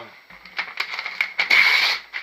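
A page being torn out of a composition notebook: the paper crackles in short ticks, then gives a loud rip lasting about half a second near the end.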